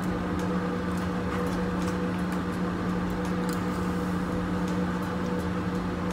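A steady low hum from room equipment, with faint light clicks of a spoon and fork against a plastic food container now and then.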